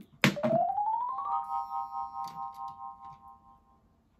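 A short electronic music sound effect: a sharp hit, then a tone that rises for about a second and settles into a held chord of several notes that fades out near the end.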